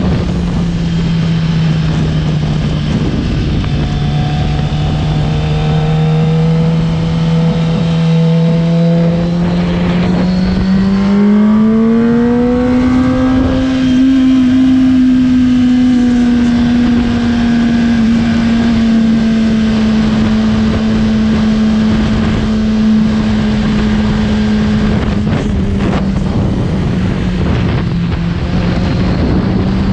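Kawasaki sportbike engine running hard at a steady high pitch, climbing over a few seconds about ten seconds in as the bike accelerates, then holding and easing slightly lower, with wind rushing over the onboard microphone.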